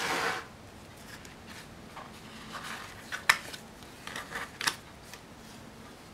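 A spiral-bound paper planner slid and turned on a desk, giving a brief swish at the start, then light paper rubbing and two sharp taps as the pages are handled and stickers are pressed down.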